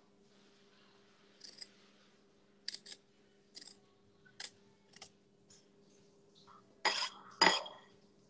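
Short, sharp scrapes and clicks of a carving tool cutting into a pumpkin, spaced irregularly, with two louder rasping sounds close together near the end. A faint steady low hum sits underneath.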